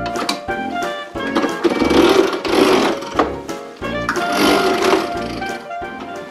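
Upbeat jazzy background music with brass. Twice, for a second or so, a loud buzzing rattle comes in over it.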